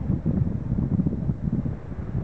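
Wind buffeting the camera microphone: an uneven, gusty low rumble.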